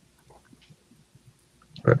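Near quiet, with a faint steady hum and a few faint small clicks. A man's voice starts near the end.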